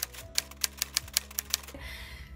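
Typewriter sound effect: about a dozen quick key strikes, roughly seven or eight a second, as text types onto the screen.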